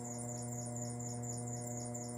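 Electric potter's wheel running with a steady hum, a faint fast pulsing hiss riding over it.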